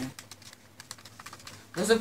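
Fingers tapping keys on a mobile phone, a quick run of light clicks, as a bill total is worked out on it.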